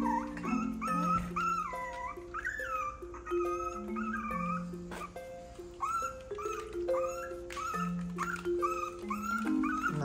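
Background music with soft held chords. Over it comes a high, wavering whining from small Chihuahua dogs.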